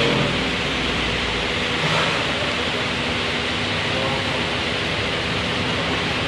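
Steady background noise, an even hiss that holds at one level throughout.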